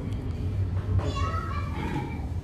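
Children's high-pitched voices calling out, loudest in the second half, over a steady low hum.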